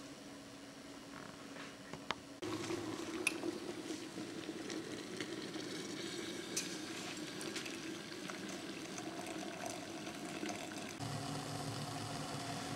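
Water poured from an electric kettle into a glass beaker, a steady pouring sound that starts abruptly about two seconds in after a short stretch of quiet room tone.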